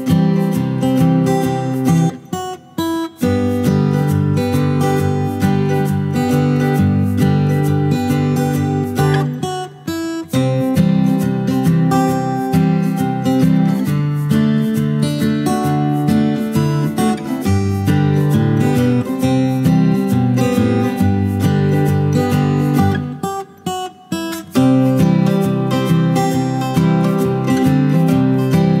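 Background music: a strummed acoustic guitar playing steadily, with brief drop-outs about two and a half, ten and twenty-four seconds in.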